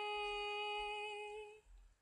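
A female voice holding the song's final note on one steady pitch, alone with nothing under it, fading out about a second and a half in.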